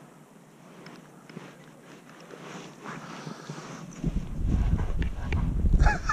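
Faint open-air ambience, then wind buffeting the microphone as a low rumble from about four seconds in.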